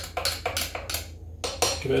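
Teaspoon clinking against a small glass in quick, light strikes, about four a second, as espresso and hot custard are stirred together.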